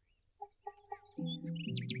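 A few short chicken clucks and high bird chirps, then background music with held notes comes in just past the middle.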